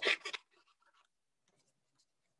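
The end of a spoken name, then a few faint, brief scratches and rustles of paper crafting work, near silence between them.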